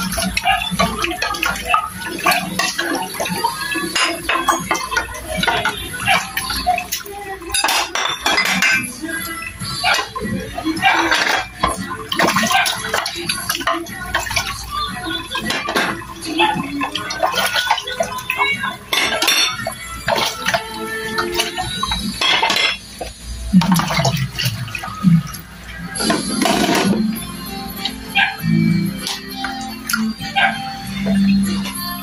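Ceramic plates and bowls clinking and clattering as they are washed and stacked by hand, with water splashing in a washing basin, over background music.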